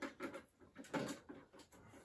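Hands handling LEGO bricks: a quick, uneven run of light plastic clicks and taps as the pieces of the castle are gripped and shifted.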